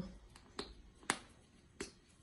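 A few short sharp clicks or taps, the loudest about a second in, spaced roughly half a second apart.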